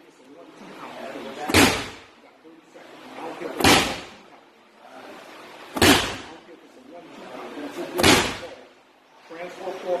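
Medicine ball slammed hard onto a gym floor four times, about two seconds apart, each slam a sharp smack.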